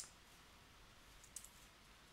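Near silence: room tone, with one faint, short click about a second and a half in, from a computer key or mouse button being pressed.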